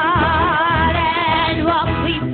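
Singing with instrumental accompaniment, the voice holding long notes with a marked vibrato.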